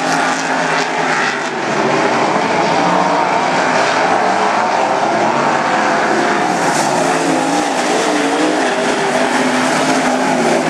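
Several wingless sprint cars' V8 engines running hard at race speed on a dirt oval. It is a loud, continuous blend of engines whose pitch keeps rising and falling as the cars lap.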